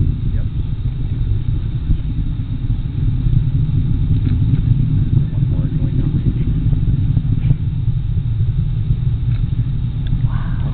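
Delta IV rocket heard far off during its climb to orbit: a steady, low rumble that wavers in strength.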